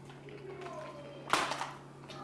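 Quiet talk over a steady low hum, broken by one short, sharp burst of noise about a second and a half in.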